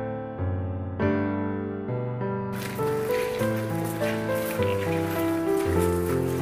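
Solo piano background music playing a slow, gentle melody. From about two and a half seconds in, outdoor ambient noise joins it underneath.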